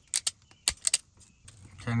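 A quick run of about six sharp metallic clicks and snips within the first second, from a hand tool stripping the insulation off the ends of speaker wire.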